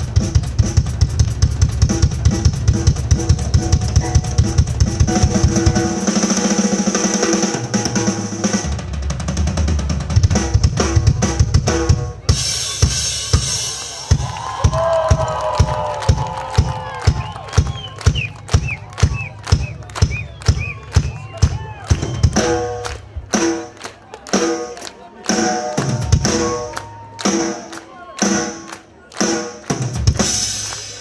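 Live drum kit solo: fast, dense bass drum and snare playing for about the first twelve seconds, then the low drums drop out while steady, even clapping and crowd shouts and whistles carry on. Near the end the drummer comes back in with spaced, loud accented hits.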